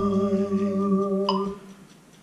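Casio XW-G1 synthesizer keyboard playing slow, sustained chords, moving to a new chord about a second in, then released so that the sound dies away shortly before the end.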